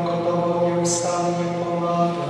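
A man chanting a liturgical prayer in Polish, holding long steady notes and moving between a few pitches, with the hiss of consonants breaking in.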